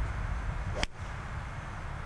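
A golf club swung through a full shot: a quick rising swish ends in one sharp crack as the clubhead strikes the ball, a little under a second in. A steady low rumble runs underneath.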